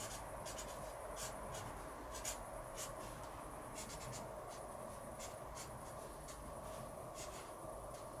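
Pen scratching on a wooden beam in short, irregular strokes as a signature is written, faint over a steady low hum.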